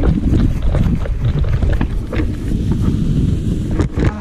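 Wind buffeting the microphone during a tandem paraglider landing: a loud, low, gusting rumble with a few scattered knocks.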